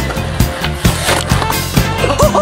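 Background music with a steady beat, a little over two beats a second, over a held bass line.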